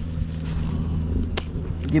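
A steady low hum with a single sharp click about one and a half seconds in.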